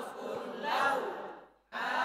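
Arabic words from a reading primer recited aloud in a drawn-out, chant-like cadence. One phrase trails off about a second and a half in, and the next begins just before the end.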